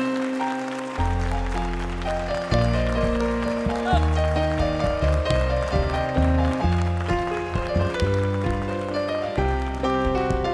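Instrumental passage of a zamba ballad from a live band: grand piano playing, with an upright double bass coming in about a second in and a large folk bass drum (bombo legüero) struck with mallets in a steady beat.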